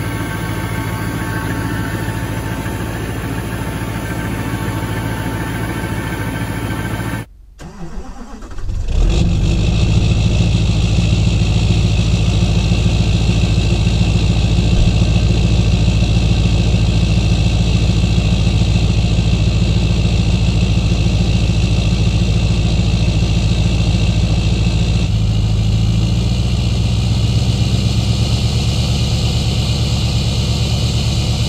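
Cold 6.6-litre LBZ Duramax V8 turbo diesel in a 2006 GMC pickup running steadily just after a cold start at well below zero. The sound drops out briefly about a quarter of the way in, then returns louder and even for the rest.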